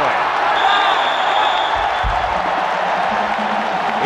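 Stadium crowd cheering loudly at the end of a long run, with a referee's whistle blowing once, about half a second in, for roughly a second.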